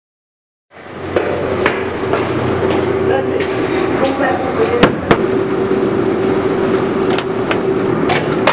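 Knocking on an apartment door: a few sharp raps, two close together about five seconds in and another near the end, over a steady hum.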